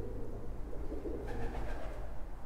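Pigeon cooing: short low coos, one at the start and another about a second in, over a steady low rumble.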